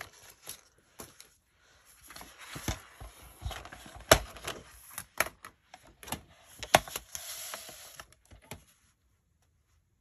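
A sheet of double-sided scrapbook paper rustling and sliding as it is handled and lined up on a paper trimmer, with scattered sharp clicks and taps, the loudest about four, five and seven seconds in.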